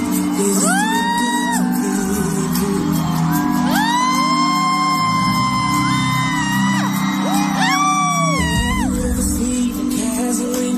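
Concert audience screaming in long high-pitched shrieks over a live band holding a steady chord: one shriek about half a second in, a chorus of several overlapping screams from about four to seven seconds, and another near the end.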